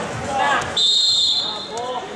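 A single shrill whistle blast about a second in, lasting just over half a second, over spectators' voices.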